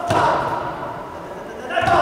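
Two thuds about two seconds apart as a karate attack is demonstrated on a partner, each contact with a short burst of voice.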